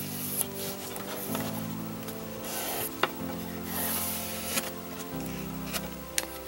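Masking tape being pulled and rubbed down onto a wooden board, in several short rasping bursts with a sharp click about halfway through, over background music of slow held chords.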